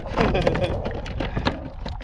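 A man laughing and exclaiming over a steady low wind rumble on the microphone, with scattered sharp knocks and clicks.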